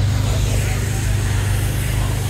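Abarth 595 Turismo's 1.4-litre turbocharged four-cylinder idling steadily, a low, even drone through an exhaust that is much louder than on the standard car.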